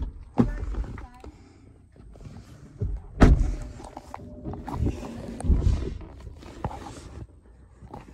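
Handling noise from a camera being moved around inside a parked car: irregular bumps, rubs and rustles, the loudest thump a little over three seconds in.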